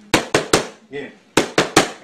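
Boxing gloves smacking focus mitts in two quick three-punch combinations, the second about a second and a half in, with a man's voice saying "yeah" between them.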